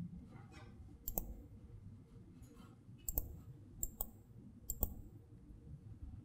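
Four sharp, faint clicks spread over a few seconds against quiet room tone: the buttons of a handheld presentation remote being pressed as the slides are advanced.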